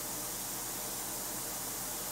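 Steady hiss with a faint low hum underneath, unchanging throughout: background room noise.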